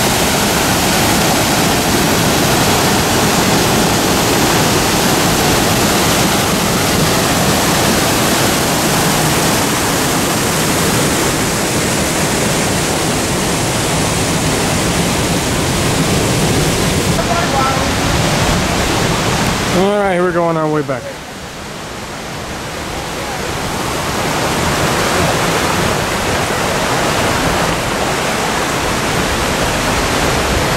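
Rushing water of a waterfall and the river rapids below it, a steady loud noise of falling and running water. About twenty seconds in it drops suddenly and a brief sound falling in pitch is heard, then the water noise builds back up.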